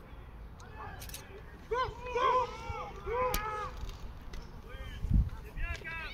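People shouting out on an American football field as a play is run, the calls rising and falling in pitch about two to three and a half seconds in. A sharp clack comes about three seconds in and a short low thump near the end.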